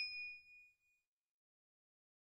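Fading ring of a bell-like notification 'ding' sound effect, the chime of a subscribe-bell animation, dying away about a second in.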